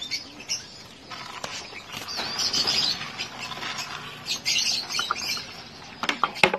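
Racing pigeons in a wire-mesh loft pen, wings flapping and scuffling in irregular bursts, loudest around the middle.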